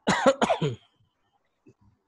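A person coughing: a short run of about four quick coughs lasting under a second, right at the start.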